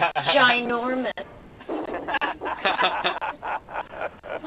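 People talking and laughing; the laughter comes near the end.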